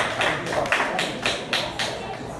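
A small audience clapping: separate, sharp claps at about four to five a second, tapering off toward the end.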